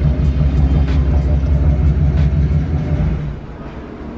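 BMW E60 engine idling through its quad-tip exhaust with a steady low rumble, which cuts off about three seconds in.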